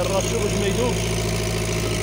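A small engine running steadily at an even speed, with water pouring from a hose into a plastic jug.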